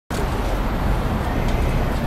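Steady low rumble with an even hiss of outdoor street noise.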